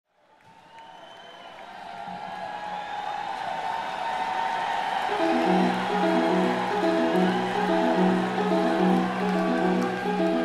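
Live rock concert recording fading in on crowd cheering and whistling. About five seconds in, the band starts a repeating riff of short, evenly spaced notes that grows louder.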